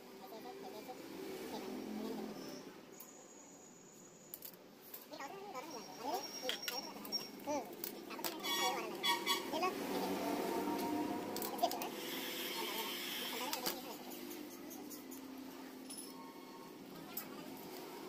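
Indistinct voices talking in the background, with a few short clicks and some rubbing noise from hands handling a plastic visor.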